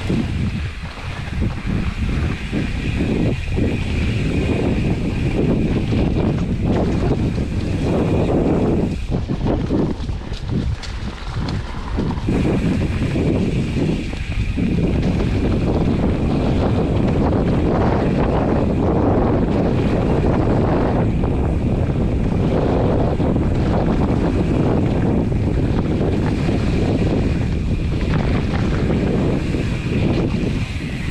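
Wind buffeting the microphone of a mountain bike camera at riding speed, over the rumble of knobby tyres rolling on a dirt trail. Brief knocks and rattles come as the bike runs over bumps and roots. A faint steady high whine runs underneath and drops out for a few seconds about nine seconds in.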